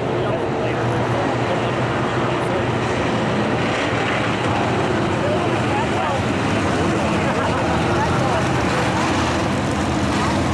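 Several vintage stock car engines running steadily at low speed during a yellow-flag caution, with indistinct voices talking over them.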